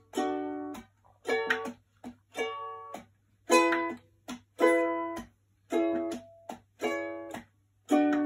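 Ukulele strummed in separate chords, about one strum a second, each ringing briefly and then cut off short, the chords changing as it goes.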